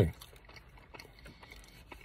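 Faint chewing and small mouth clicks from a man eating.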